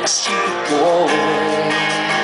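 A live band playing a slow country-rock song, with strummed acoustic guitar to the fore. About halfway through, a held note wavers in pitch.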